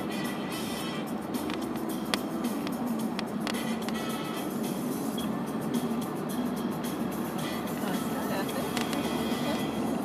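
Steady road and tyre noise inside a car cruising at highway speed, with music playing underneath.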